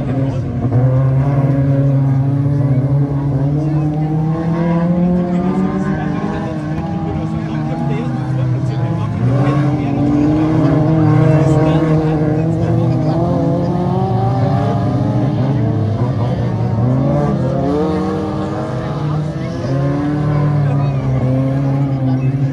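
Several small stock car engines (up to 1800 cc) racing together, revving up and dropping back as the cars accelerate and lift around the track, their pitches overlapping and rising and falling.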